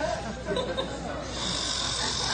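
Audience laughter, swelling about a second and a half in.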